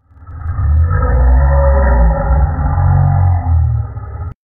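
A man's long, loud wordless yell, deep and muffled-sounding, held without a break.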